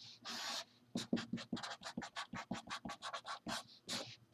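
Felt-tip marker writing on paper: one longer drawn stroke near the start, then a quick run of short strokes at about five or six a second.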